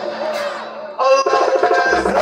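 Live band music from a stage, with plucked strings and keyboard: softer through the first second, then the full band comes back in loudly about a second in.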